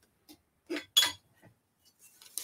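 A few light clinks of a metal ladle being picked up from kitchenware, the sharpest about a second in.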